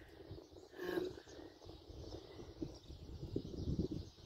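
Faint outdoor ambience: a short bird call about a second in, over a low, uneven rumble on the microphone.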